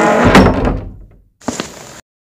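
A front door being unlatched and pulled open: a loud thunk about a third of a second in, then a lighter click about a second and a half in.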